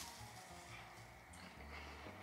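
Near silence: room tone with faint chewing of crisp wafer biscuits.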